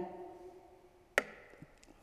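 A short pause in a talk: quiet room tone with one sharp click about a second in and a few faint ticks after it.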